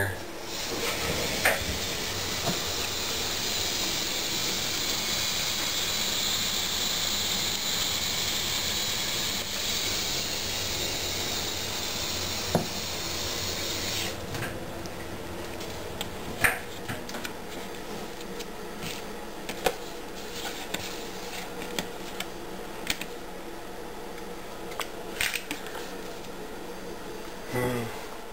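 Hot water being poured into an instant cup-ramen cup, a steady hiss lasting about fourteen seconds and then stopping. A few light clicks and taps follow as the paper lid is handled and weighted shut.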